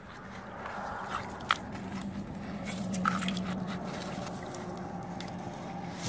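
Hands digging in wet beach mud and sand: scattered squelching, crunching scrapes and clicks, the sharpest about a second and a half in, over a faint steady low hum.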